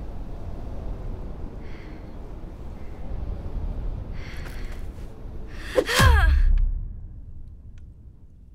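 Low steady wind rumble with a young woman's heavy, exhausted breaths, then about six seconds in a loud cry that falls in pitch together with a heavy low thud, as of her collapsing into the snow. The sound then fades away.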